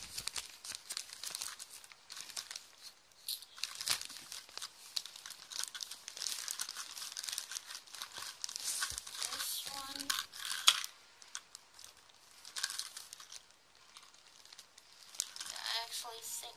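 Plastic packaging crinkling and crackling in irregular bursts as it is handled, with a sharp louder crackle about eleven seconds in.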